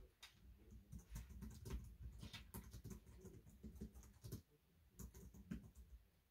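Faint typing on a computer keyboard: quick runs of key clicks, broken by a couple of brief pauses.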